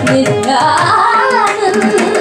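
Carnatic female voice with violin and mridangam accompaniment. Voice and violin slide between ornamented notes over a quick, steady run of mridangam strokes.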